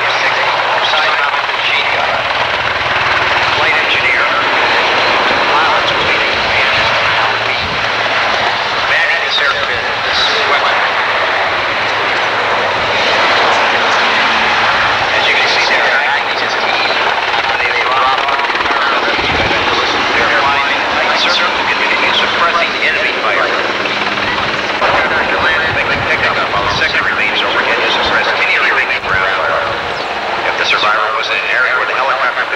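Sikorsky H-3 'Jolly Green Giant' helicopter flying low and hovering, a loud, steady rotor and turbine noise, with indistinct voices under it.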